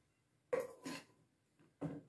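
Two short knocks about half a second apart as a small lightweight camping cook pot from an SY-101 nesting set is set down onto the larger pot.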